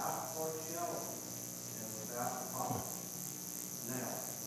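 A man reading scripture aloud, somewhat distant, in two short phrases, over a steady high-pitched hiss.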